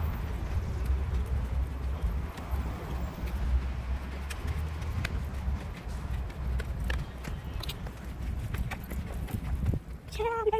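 Footsteps walking up stone steps and across brick paving, heard over a low rumble on the phone's microphone.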